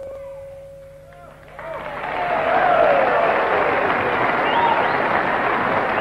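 The last chord of an electric guitar dies away. About a second and a half in, a live audience breaks into steady applause with whoops and whistles at the end of the blues number.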